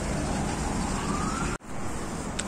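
Steady street noise with a faint siren rising in pitch over about a second, then cut off abruptly about one and a half seconds in.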